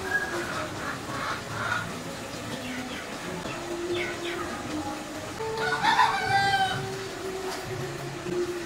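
A rooster crowing once, the crow starting a little past halfway and lasting about a second and a half, the loudest sound here. Shorter, softer chicken calls come earlier.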